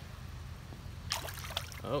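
A released redfish splashing in shallow pond water at the bank, with a short burst of splashing about a second in, over a steady low rumble.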